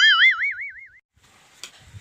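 A cartoon-style boing sound effect: a twangy tone whose pitch wobbles rapidly up and down, fading out within about a second.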